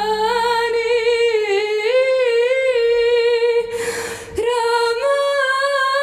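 A woman singing solo in the Levantine Arabic style, an ornamented, sustained line with vibrato and little or no accompaniment. Her voice breaks off for a short audible breath about four seconds in, then carries on.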